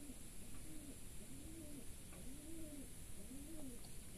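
A bird calling in the background: a soft, low hooting note that rises and falls in pitch, repeated about once a second.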